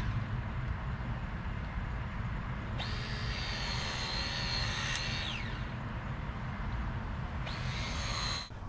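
Battery-powered hydraulic cable crimper (Burndy) running its pump motor while crimping a power-line connector: a high whine starts about three seconds in, holds for a couple of seconds, then falls in pitch as the motor winds down, and starts again near the end. A steady low rumble lies underneath.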